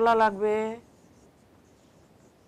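A woman's voice holds a drawn-out, steady-pitched word for under a second. Then comes faint scratching of a marker pen writing on a whiteboard.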